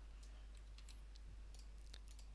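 Near silence: a faint steady low hum with a few faint, sharp clicks of a computer mouse as a clip is dragged.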